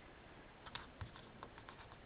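Hands handling paper stickers and card on a journal page: a few faint clicks and taps, the loudest a soft knock about halfway through.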